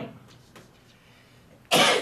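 A man coughs once, a short loud cough near the end, after a quiet stretch of room tone.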